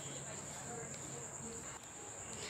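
A faint, steady, high-pitched trill of the kind a cricket makes, running on unbroken in a quiet room.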